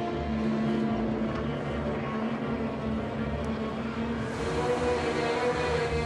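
Steady motor drone under sustained background music, the held music tone stepping up in pitch about four seconds in.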